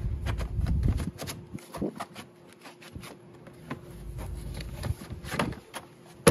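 Handling noise under the hood while the air filter is being changed: a scattered series of light clicks and knocks from the plastic airbox and the filter's cardboard box being handled. There is a louder low rumble during the first second.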